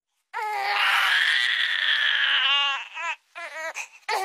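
Baby crying: one long wail starting about a third of a second in, breaking into shorter, wavering sobs near the end.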